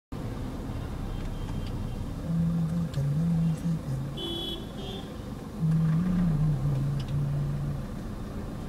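Steady engine and road rumble heard from inside a moving car in slow traffic. Twice over the rumble comes a low melody of held notes stepping between a few pitches, and a brief high-pitched tone sounds about four seconds in.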